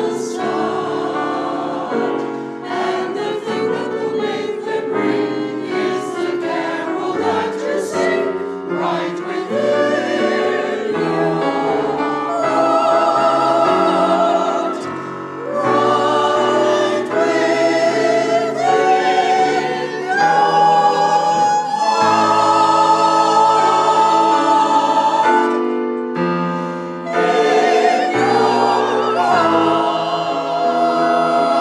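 A mixed choir of women's and men's voices singing in parts, with long held notes. There are short breaks between phrases about halfway through and a few seconds before the end.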